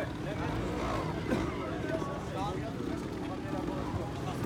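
A trials motorcycle engine running, with several people talking in the background.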